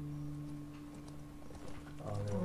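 A tense film score holding a low, steady drone, with scattered light clicks and taps over it.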